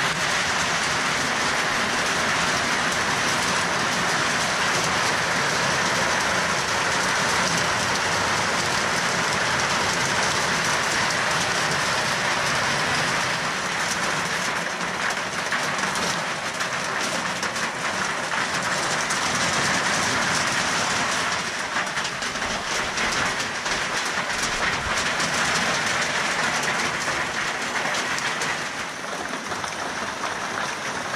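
Heavy rain falling steadily and drumming on corrugated iron roofing, a dense continuous hiss that eases slightly near the end.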